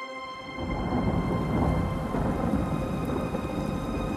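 A thunder-and-rain sound effect, a dense low rumble that swells in about half a second in, layered under a held sustained chord in a dark cinematic trailer instrumental.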